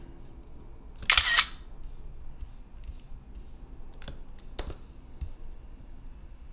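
A screenshot app's camera-shutter sound effect, played once about a second in as a screen capture is taken. A few faint clicks follow later.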